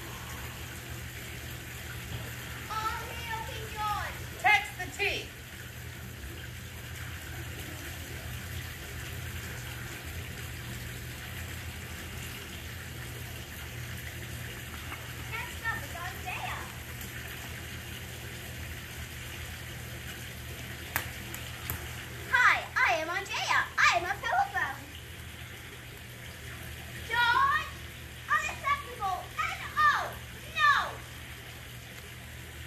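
A child's voice speaking in short bursts, several times, over a steady hiss and low hum.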